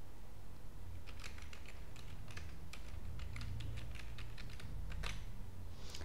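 Computer keyboard typing a password: a quick run of key clicks that starts about a second in and stops near the end, over a low steady hum.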